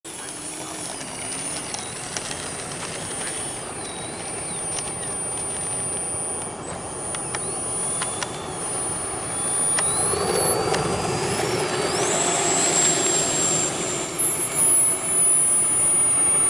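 Twin electric ducted fans of an E-flite A-10 Thunderbolt II model jet whining on its takeoff run. The whine grows louder and rises in pitch from about ten seconds in as the throttle comes up and the model lifts off.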